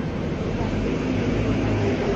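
Busy city street ambience: a steady traffic rumble that swells briefly in the middle, with faint voices of people close by.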